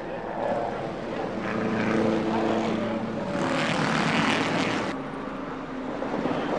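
A car engine running steadily, growing louder and harsher for a second or two past the middle. Voices can be heard behind it.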